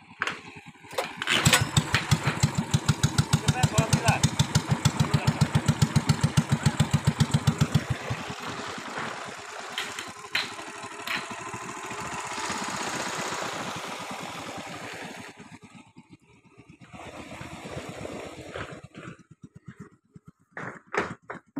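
Small boat's engine catching about a second in and running with a slow, even putter of roughly ten beats a second. Partway through the beat smooths into a steadier sound as the engine picks up, then it dips briefly near the end.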